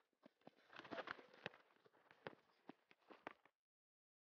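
Faint, irregular taps of a player's feet and a soccer ball being dribbled with short touches, about eight in three and a half seconds, cutting off abruptly.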